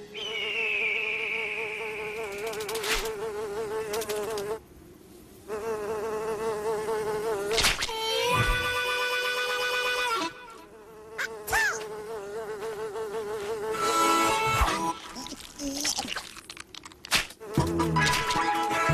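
Cartoon sound effect of a fly buzzing: a wavering drone that breaks off and starts again several times, with a falling whistle near the start and a few sharp knocks between.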